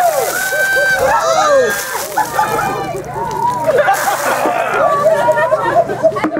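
A bucketful of ice water splashing down over a man and onto the pavement in the first second or two. Several people's voices call out and babble over it throughout.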